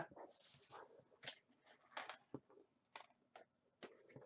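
Faint rustle of a laminated card sliding across a wooden tabletop in the first second, then a few scattered faint light clicks.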